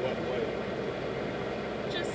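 Steady vehicle engine and driving noise while moving through floodwater behind a high-water military truck, running at an even level with no sharp events.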